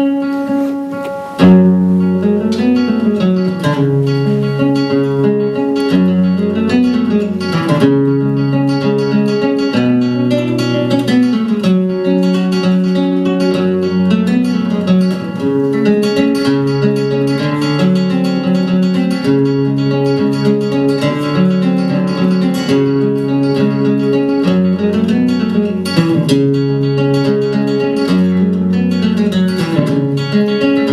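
Solo flamenco guitar playing a granaína: a free-time toque of melodic phrases over moving bass notes, with a loud struck chord about a second and a half in.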